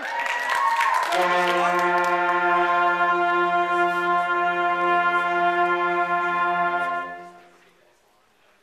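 Middle school concert band of woodwinds, brass and percussion opening a piece: a brief flourish with percussion hits, then a long held full chord for about six seconds, released together about seven seconds in.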